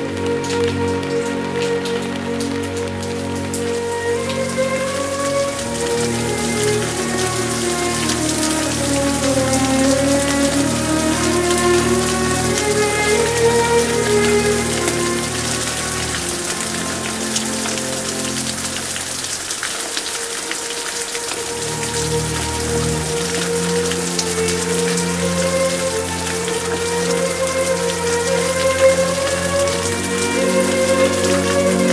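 Steady rain falling, with fine individual drop ticks, mixed over soft, slow music of long held notes and a gently rising and falling melody. The low notes drop out briefly about two-thirds of the way through.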